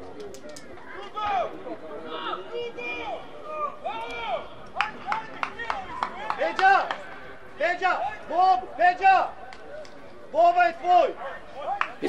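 Men's voices shouting short calls across a football pitch, one syllable or word at a time with gaps between, as players set up for a corner kick.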